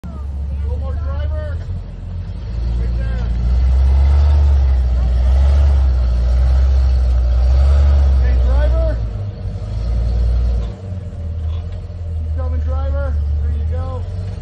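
Jeep Cherokee XJ engine working under load as the vehicle crawls up over boulders. Its low rumble swells and holds for several seconds, eases off briefly about three-quarters of the way through, then picks up again. Short bursts of voices are heard over it.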